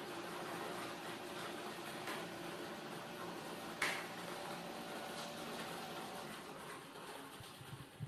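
Air blower of a clear acrylic lottery ball machine running steadily, with the lottery balls being tossed about and tapping against the plastic. One sharp click comes a little under four seconds in. The airflow dies down near the end as the balls settle.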